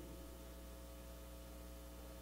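Faint, steady electrical hum with several even overtones, mains hum from the sound system.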